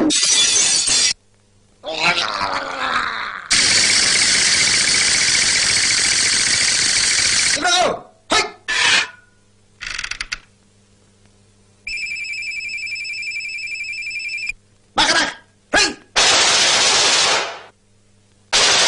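A string of cartoon sound effects: short noisy bursts, a brief squawking voice-like sound, and a long hiss. Then a steady electric-bell-like ringing with a fast trill lasts a couple of seconds, and more noisy bursts follow.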